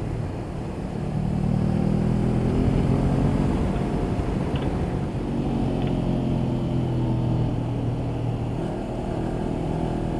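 Honda CB500X's parallel-twin engine running on the road under throttle, its note climbing about a second in and again around five to six seconds in, with a steady rush of wind noise.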